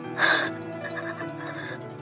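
Soft plucked-string background music, with a woman's sharp, tearful gasp about a quarter of a second in, the loudest moment.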